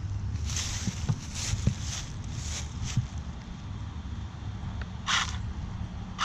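Tires of a brushless-powered Vaterra Twin Hammers RC rock racer spinning and scrabbling in dry leaves under short bursts of throttle: the wheels spin instead of climbing. There are several bursts in the first three seconds and one more about five seconds in, over a steady low hum.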